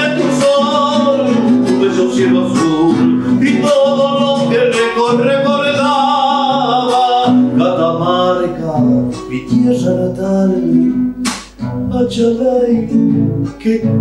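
A man singing a Spanish-language folk song to his own strummed classical guitar. The voice is fuller in the first half and sparser later, and there is a sharp stroke about eleven seconds in.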